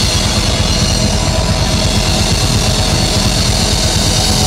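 Hard-rock band playing loud live, the drum kit to the fore with a fast beat under electric guitars.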